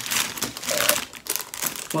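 Clear plastic lure packets crinkling and rustling irregularly as they are picked up and handled in a pile.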